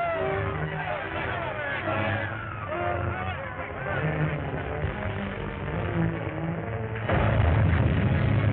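Dramatic orchestral chase music over a car engine running at speed, on a narrow-band old film soundtrack. The music jumps suddenly louder about seven seconds in.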